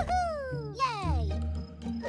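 A cartoon ant's voice crying out in falling wails that drop steeply in pitch, two in a row and a third starting at the end, over background music with a low bass line.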